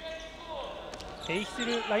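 Low, steady sound of a basketball game in an indoor gym, then a man's play-by-play commentary starting about a second and a half in.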